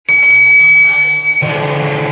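Live band music starting abruptly: a steady high held note over low sustained notes, changing notes about one and a half seconds in.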